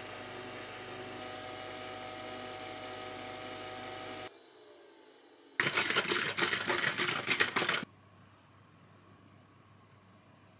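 Nespresso capsule coffee machine running with a steady hum as it brews coffee into a travel mug, cutting off suddenly about four seconds in. About a second later comes a loud burst of handling noise lasting about two seconds.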